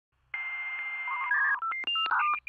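Electronic telephone-style beeps: a steady tone over hiss for about a second, then a quick run of short beeps at changing pitches, like a touch-tone number being dialled.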